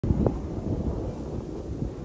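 Wind buffeting a phone microphone: an uneven low rumble that rises and falls in gusts, with a short louder bump about a quarter second in.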